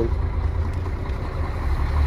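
Mercedes-Benz Axor truck's diesel engine running at low revs, a steady low hum heard from inside the cab.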